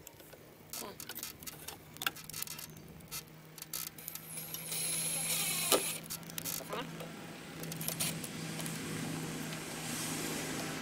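Cordless drill running in a burst of about a second near the middle, driving a small screw into a wooden gate post, among light clicks and clinks of screws and mounting parts being handled.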